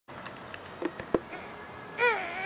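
Quiet indoor background noise with a few brief soft clicks and one sharper knock just over a second in.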